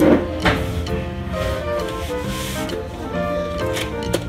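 Background music with a steady melody. Over it, two short rasping rips about half a second apart as packing tape is peeled off the HP LaserJet M15w's plastic top, and a plastic click near the end as the printer's cover is opened.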